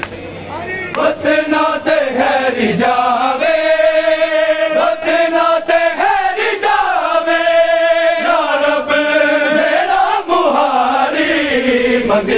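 Men chanting a Punjabi noha (Shia mourning lament), drawing out long held notes, with sharp slaps of chest-beating (matam) recurring under the chant.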